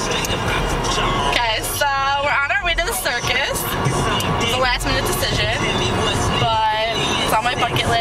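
Several people's voices, with a few long, wavering calls or sung notes, over a steady low rumble and noisy background.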